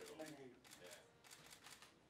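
Near silence: a faint voice trails off, then a run of soft rustling clicks.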